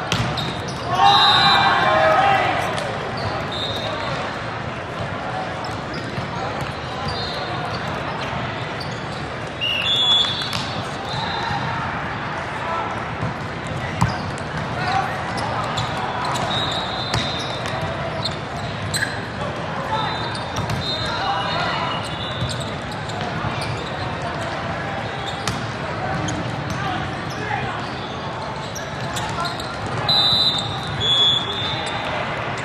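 Indoor volleyball match in a large echoing hall: a burst of shouting from the players about a second in, then a steady din of voices from players and spectators with occasional sharp ball hits and short high squeaks.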